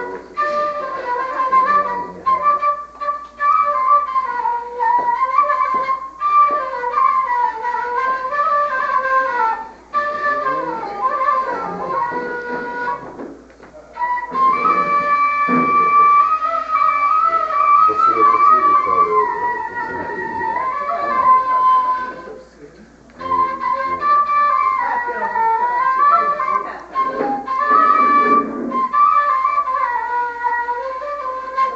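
Shabbaba, the short Levantine end-blown shepherd's flute, playing a traditional melody in flowing phrases broken by a few brief pauses.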